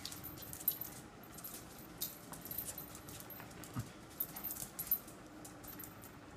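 Small dog scrambling on a tile floor chasing a laser dot: metal collar tags jingling and claws clicking in quick, irregular flurries.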